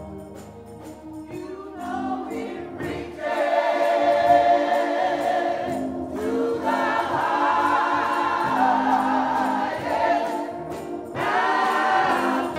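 Gospel choir singing with instrumental accompaniment. The voices come in about three seconds in after a quieter instrumental passage, and sing in phrases with short breaks between them.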